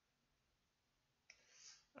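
Near silence, room tone only, then a single sharp click about a second and a quarter in, followed by a short breath just before speech starts.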